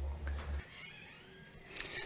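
Low background hum from the end of a played-back video clip, cutting off about half a second in, then a quiet gap before a voice starts near the end.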